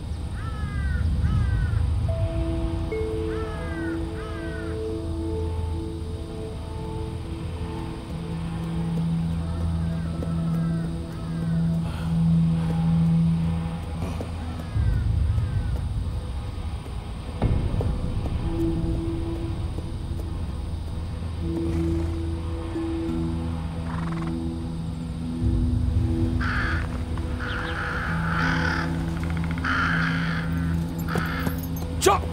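Film score of slow, long-held low notes, with crows cawing over it; the caws come in a cluster near the end.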